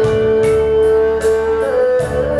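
Instrumental backing track playing a held melody note over a steady beat, with no singing.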